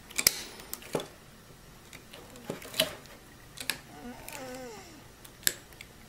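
Pliers twisting two stripped copper wires together, a handful of separate small metal clicks and ticks as the jaws grip and turn the wire.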